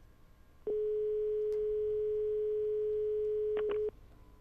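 Telephone line tone after a dropped call: a single steady tone comes in about a second in, holds for about three seconds, and cuts off with a couple of short clicks just before the end. It is the sign that the caller's line has disconnected.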